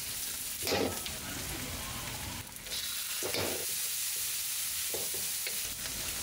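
Sliced onions and garlic sizzling in hot oil in a wok while being stirred with a wooden spatula. The steady frying hiss swells twice, about a second in and again around three seconds.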